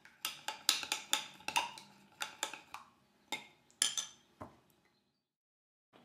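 A utensil clinking against a glass measuring cup while stirring a sauce, with quick light clinks about three or four times a second. The clinks thin out and stop about five seconds in.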